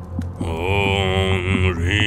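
A man's voice chanting a mantra in long, drawn-out wavering notes, starting about half a second in with a short break near the end, over a low steady drone.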